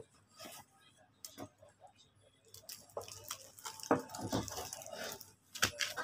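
Cardboard box and paper packing being handled and crinkled as a small blender is lifted out. The light crackles and knocks are sparse at first and get busier after about two and a half seconds.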